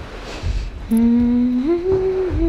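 A voice humming a slow, wordless tune in long held notes. After a short pause it takes up a low note about a second in, then steps up to a higher one near the end.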